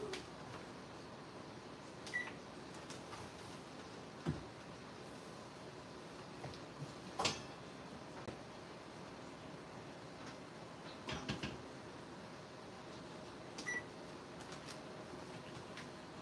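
Faint off-camera kitchen sounds from working an oven: a handful of scattered knocks and clunks, and two short high beeps, one about two seconds in and one near the end.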